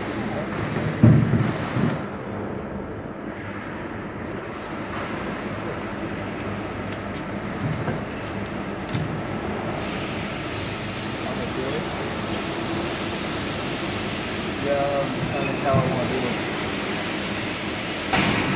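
Hydraulic CNC press brake running with a steady mechanical hum, a heavy thump about a second in. Faint voices near the end.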